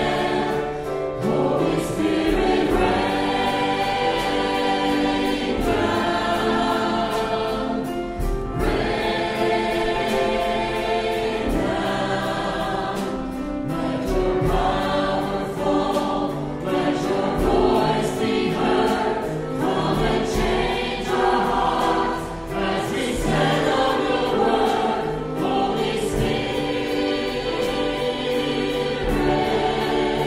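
Many voices singing together in a gospel hymn, held notes flowing continuously with no pauses.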